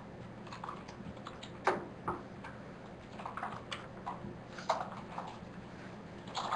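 Computer keyboard keys clicking at an irregular pace, with two louder clacks about a second and a half in and again near five seconds.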